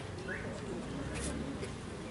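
Quiet open-air ambience with a faint low rumble and one brief rising bird chirp about a third of a second in.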